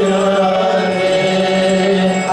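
Sankirtan: a group of voices chanting a Krishna mantra as devotional music, sung on long held notes.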